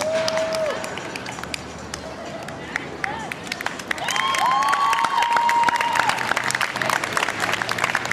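Watching crowd clapping and calling out, with a laugh at the start. Many short sharp claps run throughout, and drawn-out shouts rise over them about four seconds in as the crowd gets louder.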